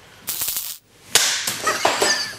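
Two sudden, noisy whip-like swishes of a TV edit's transition effects: a short one early, then a louder, sharper crack about a second in that fades away.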